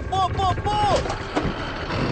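A high-pitched voice calling out in several short, rising-and-falling shouts over a continuous low rumble, with a sharp knock about one and a half seconds in.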